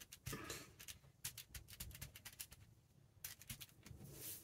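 Faint paper rustling and light taps of hands pressing and smoothing a freshly glued paper cutout onto a paper envelope, with a short pause about two-thirds of the way through.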